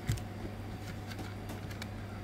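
Quiet handling of the tweeter units: a few light clicks and taps with a small knock at the start, over a steady low hum.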